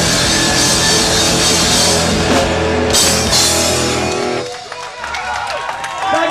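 Rock band playing live on electric bass, electric guitars and drum kit, with a cymbal crash about three seconds in. The song stops just over four seconds in, and the crowd cheers and shouts.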